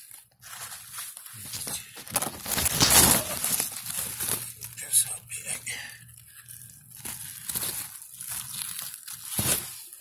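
Zucchini leaves and stems rustling and crackling as a gloved hand pushes through the plants, in irregular bursts, loudest about three seconds in, with a couple of sharper cracks later on.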